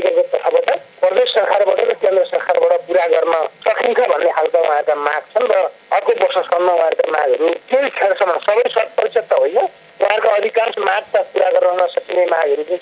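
Speech only: a person talking without a break, the voice sounding thin and narrow, like speech carried over a radio or telephone line.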